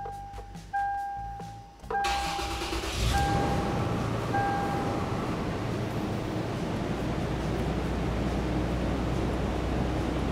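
A Toyota 4Runner's warning chime beeps repeatedly while its 1GR-FE 4.0-litre V6 is cranked about two seconds in and catches a second later. The engine settles into a steady idle, and the chime stops about five seconds in.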